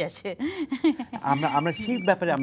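Electronic telephone ringing, a rapidly pulsing high tone, starting about two-thirds of the way in over ongoing speech: an incoming call on the studio phone-in line.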